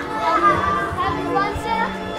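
Children's voices and chatter over carousel music with long held notes.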